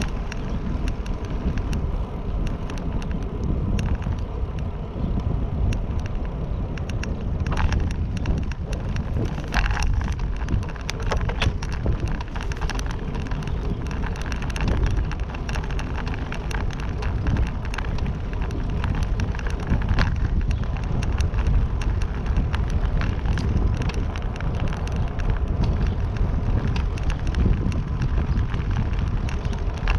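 Wind rumbling on a handlebar-mounted camera's microphone as a road bike rolls along pavement, with steady tyre noise and frequent small clicks and knocks from the ride.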